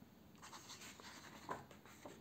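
Faint rustle of a picture book's paper page being turned by hand, with a slightly louder brush of paper about one and a half seconds in.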